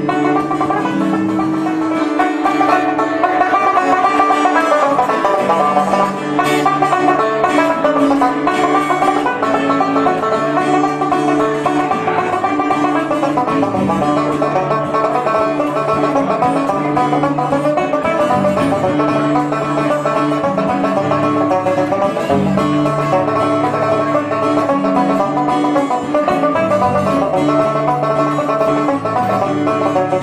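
Banjo picked with a plectrum, leading an instrumental tune over acoustic guitar chords, in a dense, continuous run of notes.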